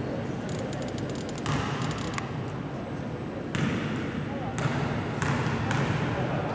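People talking in a sports hall, with a few sharp knocks of a basketball bouncing on the hardwood court, mostly in the second half.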